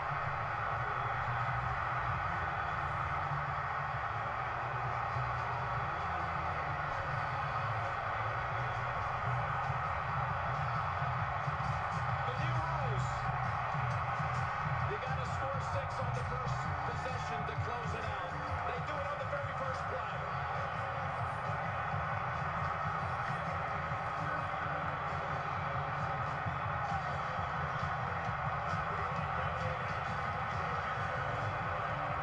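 Music playing over the steady din of a packed football stadium crowd, carried on a TV broadcast, with no clear words.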